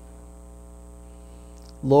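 Steady electrical hum with a thin high-pitched whine on top, unchanging through a pause in speech; a man's voice starts near the end.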